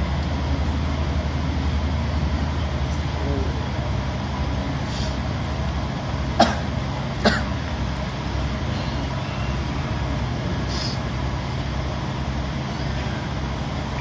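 A steady low hum fills the room, and two sharp clicks come a little under a second apart midway.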